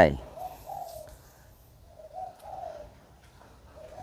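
A dove cooing faintly: two short phrases of low notes about a second and a half apart.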